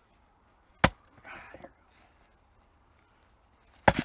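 Splitting maul striking a tough Y-crotch chunk of seasoned tree trunk twice: a sharp crack about a second in and another just before the end, the second blow starting to split the chunk.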